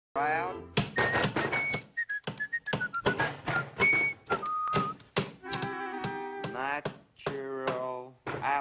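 Cartoon soundtrack of sound effects and orchestral music: a rapid run of sharp knocks and clicks mixed with short whistle-like tones, some stepping down in pitch. About five and a half seconds in, a held chord takes over.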